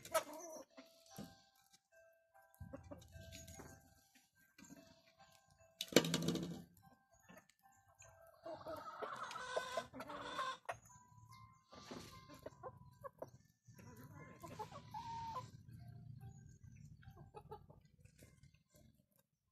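Domestic hens and a rooster clucking and calling as they feed, in short scattered calls with some longer held notes and a cluster of calls near the middle. A loud sudden burst sounds about six seconds in.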